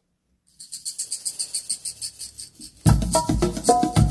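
Opening of a recorded song played through B&W Nautilus 805 bookshelf loudspeakers: a light, quick, high percussion pattern starts about half a second in, and the full band with deep bass comes in loudly near the end.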